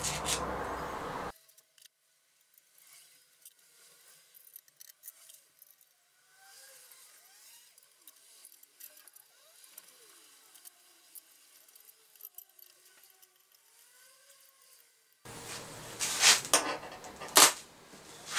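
Mostly near silence, then near the end a few sharp metallic clicks and knocks as a NEMA 23 stepper motor and its aluminium spacers are handled and fitted against the router's mounting plate.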